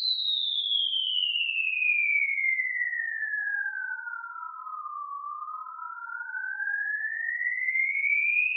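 Edited-in electronic whistle sound effect: one clean tone gliding steadily down from high to low, joined about two and a half seconds in by a second tone rising from low to high, the two crossing near the middle.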